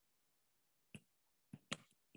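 Near silence broken by three faint short clicks, one about a second in and two close together near the end: a stylus tapping on a tablet screen as pen strokes are written.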